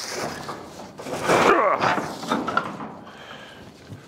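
A stiff, sheet-metal-clad barn door being dragged open, scraping and rattling, loudest about a second in and then dying away; the door is hard to open.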